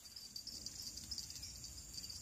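Faint, steady high-pitched chirring of insects.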